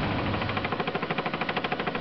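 A machine running with a fast, even rattling pulse of more than ten beats a second.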